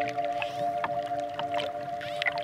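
A calm held chord of relaxation music, with scattered dolphin clicks over it.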